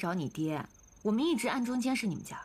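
A woman speaking lines of drama dialogue, quieter than the narration around it. A faint, high, even trill runs behind her voice.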